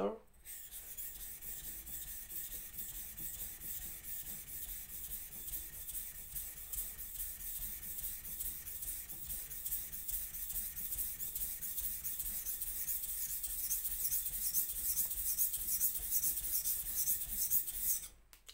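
Steel blade of a single-bevel kitchen knife stroked back and forth on a wet, water-soaked whetstone: a steady scraping rasp in repeated strokes, getting slightly louder and more distinct near the end at about two to three strokes a second. The bevel is being ground until a burr turns over to the other side.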